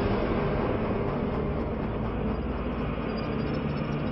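Steady, even rumbling noise on the soundtrack of building-collapse footage, played back through a screen share.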